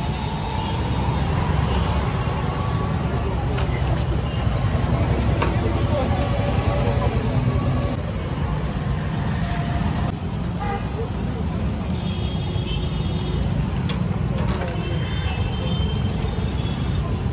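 Busy street ambience: a steady low rumble of road traffic with voices talking in the background.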